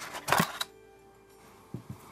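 Rustling and scraping of a cardboard box as a heavy anodized-aluminium mitre cutter is lifted out of it, then two soft low thumps near the end as the tool is set down on a cutting mat.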